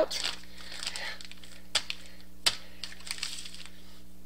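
Plastic zip-top bag crinkling and rustling as hands press a lump of ginger clay flat inside it, with two sharp clicks about halfway through.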